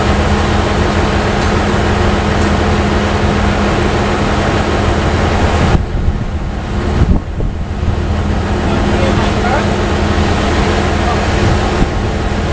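Heavy truck engine running steadily close by, a low hum under a broad rushing noise. About six seconds in the noise thins for a second or two, with a sharp knock near seven seconds.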